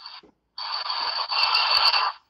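Harsh scraping, crackling noise coming through the video-call audio from a participant's open microphone. It starts about half a second in, lasts about a second and a half with a thin high whine running through it, and has a few sharp clicks near the end.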